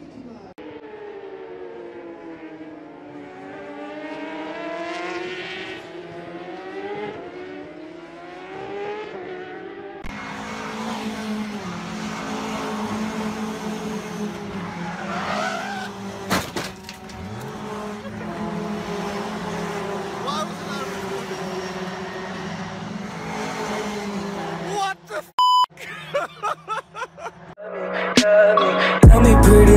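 Several race car engines passing at speed, their notes sliding up and down and overlapping as the cars go by. After a cut, a steadier engine drone follows, with another car passing in the middle.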